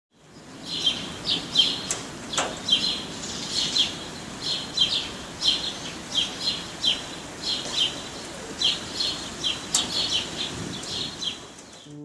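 Birds chirping: short high chirps, often in pairs, about two a second over a steady hiss, fading away near the end.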